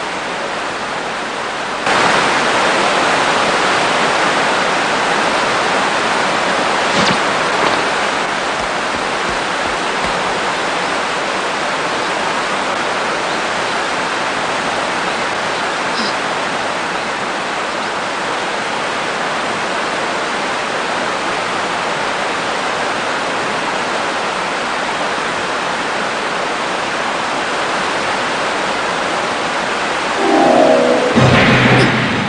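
A steady rushing noise, like water or wind, with no voices and no music. It gets louder about two seconds in and stays even after that.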